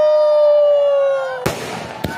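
A spectator's long, high, held 'woo' cheer, which ends about one and a half seconds in with a single sharp firework crack.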